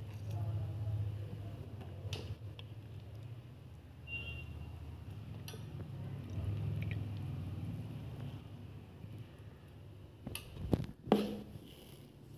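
Quiet handling of sticky dates as they are pitted by hand and dropped into a steel blender jar, with a few small clicks over a low steady hum and a couple of sharp knocks near the end.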